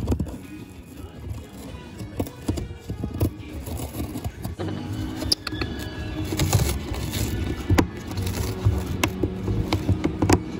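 An African grey parrot chewing and tearing cardboard with its beak: irregular scrapes and snaps, over background music.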